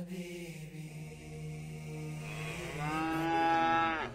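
A cow mooing: one long moo, low and steady at first, then rising in pitch and growing louder through its second half before it stops sharply.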